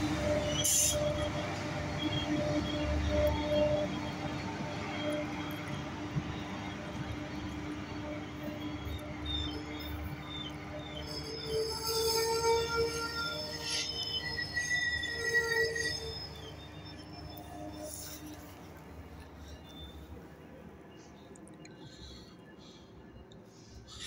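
Metrolink commuter train with bilevel coaches rolling past and pulling away from the station, running with a steady low hum. About halfway through, its wheels squeal in several high, shifting tones, and the sound then fades as the train moves off.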